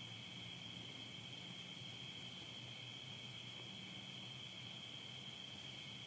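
Faint crickets trilling steadily, one unbroken high note, over a faint low hum.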